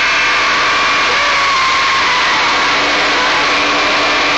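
Live power-electronics noise: a loud, unbroken wall of distorted electronic noise with a few held, steady tones running through it.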